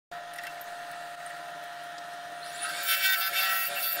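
Wood lathe running with a steady motor whine. About two and a half seconds in, a rising whine is heard as it speeds up, followed by a louder, hissy noise.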